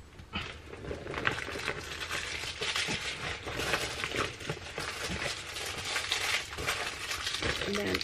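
Clear plastic bag crinkling and rustling as hands rummage in it and pull out small wrapped Christmas ornaments. It is a busy crackle of many small clicks, starting about half a second in.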